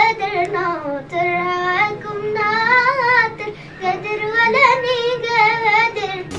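A young girl singing an Arabic song unaccompanied, in long held phrases with a wavering, ornamented pitch and short breaks for breath between them.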